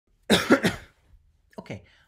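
A man coughs three times in quick succession.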